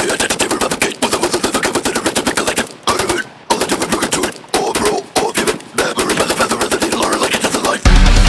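A death metal vocalist rattling out extremely fast staccato syllables, about a dozen a second, unaccompanied, in runs broken by short pauses. Heavy metal music with deep bass kicks in right at the end.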